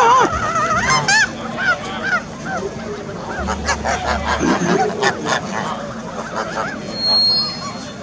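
A flock of white domestic geese honking loudly, many calls overlapping in the first couple of seconds, then thinning out to scattered, fainter honks.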